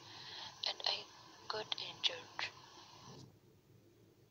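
Recorded speech from a WhatsApp voice message playing back: faint and hissy, with sharp consonant clicks, cut off about three seconds in when playback stops.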